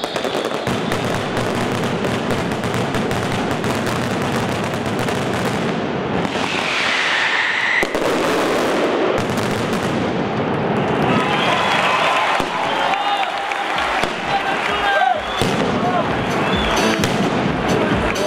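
A Valencian mascletà: a dense, continuous barrage of firecracker detonations and crackling, with a falling whistle from a whistling firework about six seconds in.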